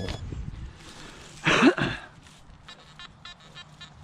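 A brief loud rush of noise about a second and a half in. From about halfway on, the Nokta Anfibio metal detector gives short, repeated beeping target tones as its coil sweeps over a buried target.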